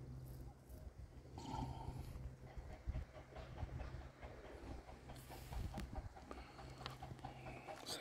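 Faint scuffs and footsteps on dry, crusted field soil with a few light knocks, over a low steady hum.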